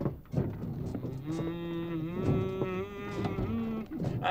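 A voice making long, drawn-out moo-like calls: several steady held low notes, each about a second long and at a different pitch.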